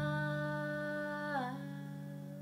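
A woman's voice holds a long sung note in a jazz ballad, glides down to a lower pitch about one and a half seconds in, and fades. Beneath it a low double bass note rings steadily.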